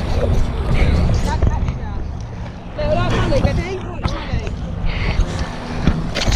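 Heavy, constant rumble of water movement and handling noise from an action camera held just at the surface of a swimming pool. Short bits of a child's voice and other voices come in now and then.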